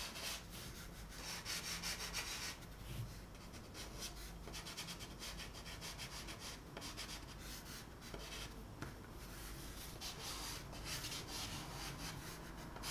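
A chalk pastel stick rubbing on textured pastel paper in short, repeated scratchy strokes as the highlight areas are filled in with light colour. The sound is quiet.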